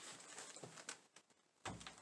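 Near silence: faint room tone with a few soft handling clicks, then a short low thump near the end as the chainsaw is set down on the cardboard-covered table.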